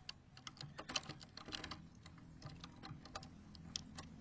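Faint, irregular small clicks and taps of a metal door-handle backplate and its knob being handled and seated against a wooden door over the lock.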